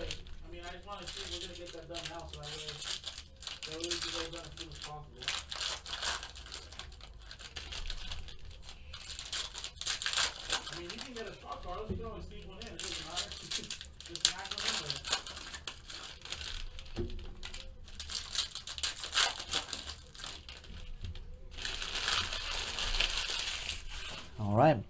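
Foil trading-card pack wrappers crinkling and tearing as cards are pulled out and handled, in an irregular string of crackles with a longer stretch of crinkling near the end. Faint voices can be heard low in the background.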